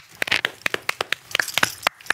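A few people clapping: scattered, irregular hand claps, about five or six a second.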